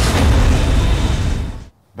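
A loud transition sound effect for a TV segment bumper: a dense noisy burst with a deep low rumble, fading out about a second and a half in.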